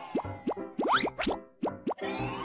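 Cartoon popping sound effects in a children's TV logo jingle: a quick run of about eight short pops, each sliding upward in pitch, over light music.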